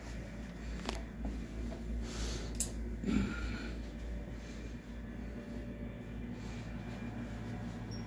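Room tone with a steady low hum. There is a single click about a second in, then a brief rustle and a soft bump around two to three seconds in, typical of handling a camera.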